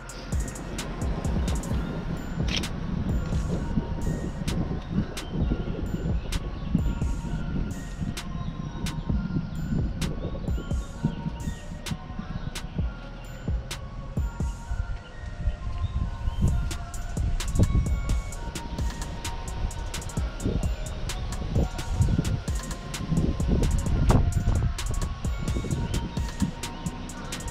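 Background music with a steady beat, over a low rumble.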